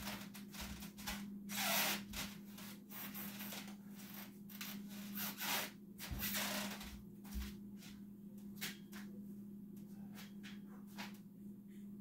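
Rubbing and rustling handling noises that come in several bursts, strongest about two seconds in and again around six seconds, mixed with light clicks and a few soft footfalls. A steady low hum runs underneath.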